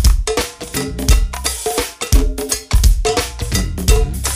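Go-go percussion groove (a "pocket"): drum kit with kick drum, a repeating cowbell and hand percussion playing a steady, syncopated beat.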